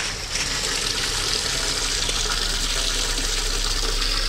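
Steady rush of running water from a garden pond's pumped filter system, at an even level throughout.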